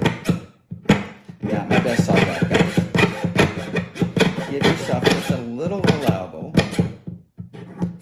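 Jeweler's saw blade cutting silver sheet in rapid, rhythmic back-and-forth strokes, several a second, with short pauses about a second in and near the end.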